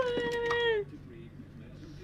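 A cat meowing: one long meow, falling slowly in pitch, that stops a little under a second in.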